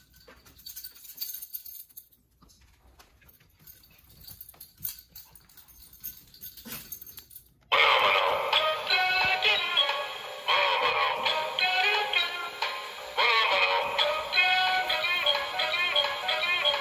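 Quiet with faint scattered clicks, then about eight seconds in an animated plush Halloween monster toy suddenly starts playing a song, with a high-pitched singing voice over music.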